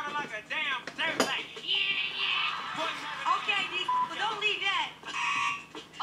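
Several voices talking and shouting over one another through the played roast-show audio, with a single sharp hit about a second in.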